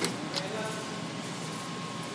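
Two sharp metallic clicks in the first half-second as the dies are seated by hand in the crimp head of an Eaton ET5050 hose crimper. Under them runs a steady machine hum with a faint high whine.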